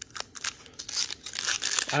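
Wrapper of a Topps baseball card pack crinkling and tearing open at its seam: a run of crackles that grows thicker and louder in the second half.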